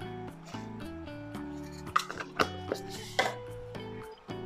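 Background music of held, steady notes, with a few short sharp sounds about two and three seconds in.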